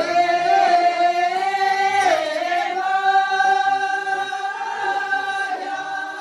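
A group of women singing a folk dance song together in long held notes, the pitch dipping and rising again about two seconds in.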